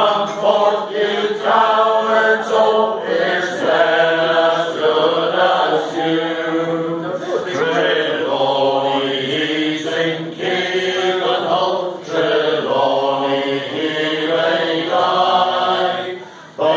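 A group of five men singing a Cornish song together without accompaniment, their voices held in long sustained notes.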